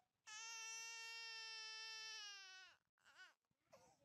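A small child's faint high voice holding one long steady cry-like note for about two and a half seconds, sagging slightly as it ends, then two short rising-and-falling calls near the end.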